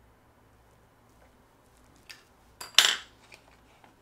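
Small steel parts clinking together: a light clink about two seconds in, then a louder short metallic clatter lasting about half a second.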